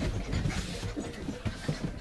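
A litter of five-week-old sheepadoodle puppies moving about on a hard floor: irregular light ticks and scuffles of small paws and claws, with a low rumble underneath.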